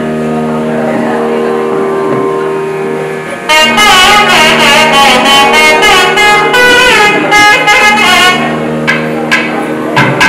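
Nadaswaram, the South Indian double-reed pipe, with a steady drone held for the first three seconds. The nadaswaram then breaks into a loud, ornamented melody with sliding notes from about three and a half seconds in. It falls back to the drone near the end as a few thavil drum strokes come in.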